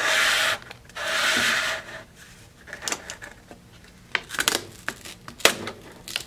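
Water-activated paper tape pulled out of a manual gummed-tape dispenser in two noisy pulls about a second apart, followed by scattered clicks and taps as the strip is handled at the serrated cutting blade, with one sharp click near the end.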